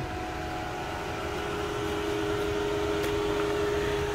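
A silver Volkswagen Tiguan plug-in hybrid SUV pulls away slowly, giving a steady low hum of two held tones that grows slightly louder as the car comes closer.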